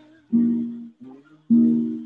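Acoustic guitar accompaniment between sung lines: two strummed chords about a second apart, each cut off short, with a few softer notes picked between them.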